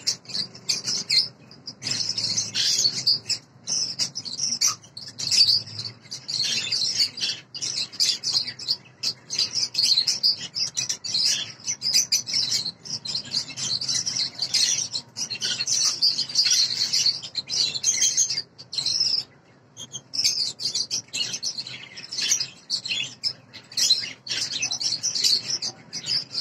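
Masked lovebirds (green personata) chattering: a near-continuous stream of rapid, high-pitched chirps, with a brief pause a little past the middle.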